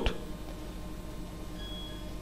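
Faint room tone: low steady hiss and hum from the recording, with a brief faint high tone near the end.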